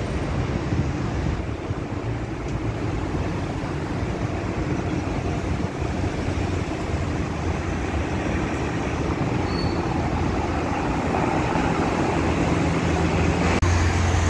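Steady street traffic noise from passing cars, a continuous rumble without breaks.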